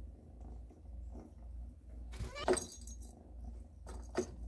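A kitten batting small plastic cat toy balls about in a litter tray: faint scattered clicks and one short rattle a little past two seconds in, over a steady low hum.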